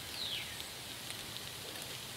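A steady, even hiss with no distinct knocks or strikes, and a faint short falling whistle just after the start.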